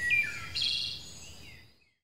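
Birds chirping: short whistled calls and falling glides, fading out near the end.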